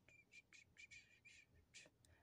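Near silence, with a quick run of about seven faint, short, high-pitched chirps.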